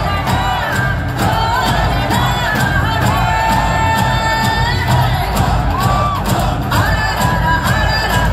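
A song with a sung melody and a steady beat played loud over a stage sound system for a dance, with a crowd cheering over it.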